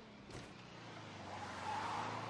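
Faint car engine and tyre noise from a film soundtrack, growing slowly louder as the car pulls away, over a low steady hum.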